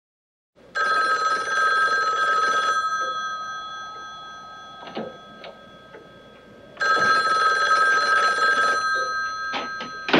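A telephone's bell rings twice. Each ring lasts about two seconds and the bell rings on and fades after it, with the second ring coming about six seconds after the first. A few faint knocks fall between and after the rings.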